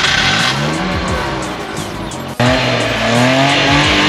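A 1983 Maruti 800's small three-cylinder petrol engine just started and revving, its pitch rising. About halfway through it cuts off abruptly and loud music with guitar takes over.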